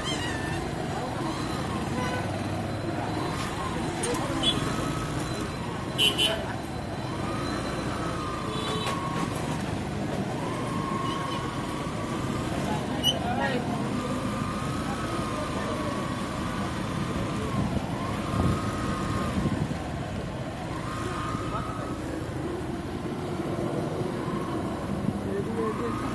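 Road traffic: steady vehicle engine and road noise with a faint wavering tone that rises and falls every second or two, and a short horn beep about six seconds in.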